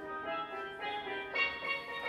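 Live band music led by a steel pan playing a melody of short, quick notes.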